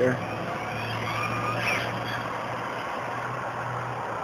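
A road vehicle's engine running with a steady low hum, with a faint high whine that rises in pitch about a second and a half in.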